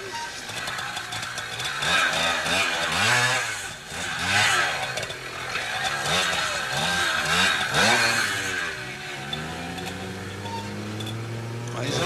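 Italjet 100 cc two-stroke trials motorcycle, its engine revving up and down in repeated quick blips, then holding a steadier, lower note for the last few seconds.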